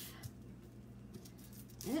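Faint handling sounds, a few soft clicks, as hands work a hot-glued nose loose on a stuffed sock gnome, over a low steady hum.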